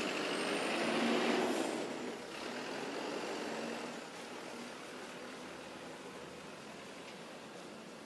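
A motor vehicle passing, its noise swelling over the first two seconds and then fading to a steady low hum.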